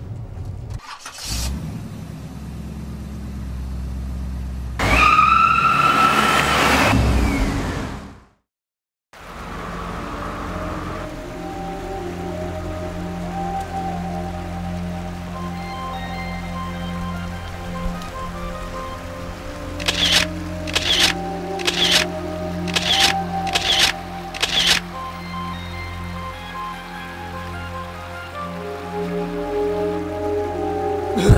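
A car engine running, then a loud burst of revving with a high rising-and-falling squeal lasting about three seconds that cuts off suddenly. After a short silence, slow background music with sustained tones takes over, with a run of about six sharp hits roughly a second apart midway through.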